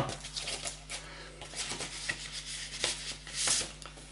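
Paper rustling and rubbing as a brown paper envelope is opened and sheets of vinyl stickers are slid out, with a louder rustle about three and a half seconds in.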